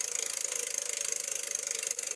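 Prize-wheel spin sound effect from a phone earning app: a rapid, even ticking like a ratchet while the wheel turns, over a steady hiss.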